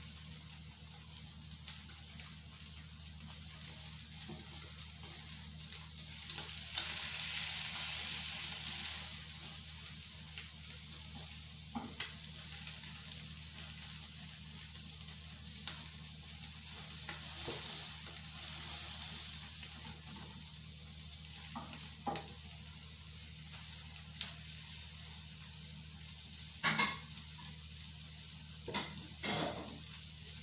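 Food sizzling in a hot frying pan, a steady hiss that swells louder for a couple of seconds about seven seconds in. A few short clicks and scrapes of the spatula against the pan come through, mostly in the second half.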